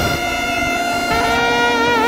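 Trumpets of a Mexican brass band playing son de chinelo, holding long notes. A lower note joins about a second in, and near the end the notes take on a wide, wavering vibrato.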